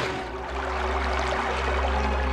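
Cartoon sound effect of running, gushing water, the giant's tears pouring, over a sustained low chord of background music.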